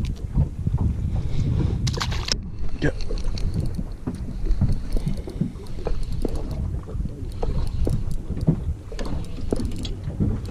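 Wind rumbling on the microphone and water noise around a small boat at sea, with scattered clicks and rustles from hands handling a hooked fish and a spinning reel.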